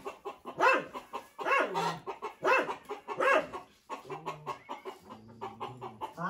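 A chicken clucking: four loud calls about a second apart, each rising and falling in pitch, followed by two short low tones.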